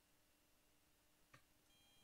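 Near silence: a pause in an online meeting's audio, with one faint tick about a second and a half in.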